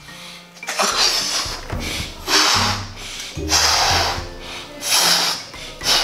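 A person blowing up a latex balloon by mouth: about four long, forceful breaths rushing into it, with short pauses for air between them. Background music plays underneath.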